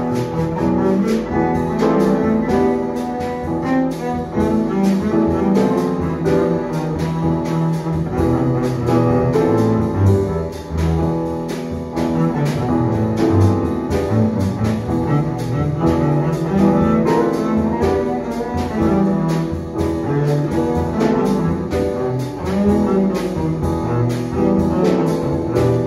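Grand piano and double bass playing a piece together, the bass bowed (arco) against the piano's chords and melody.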